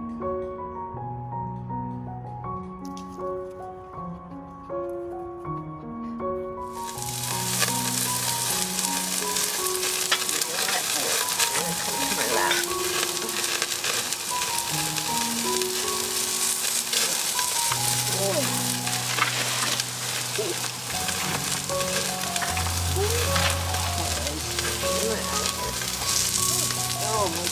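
Piano music, then from about seven seconds in, sliced meat sizzling steadily on a small grill over glowing coals, with fine crackles, while the music carries on underneath.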